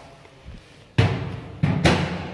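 A deep drum struck three times: one hit about a second in, then two quick hits near the end, each with a booming decay.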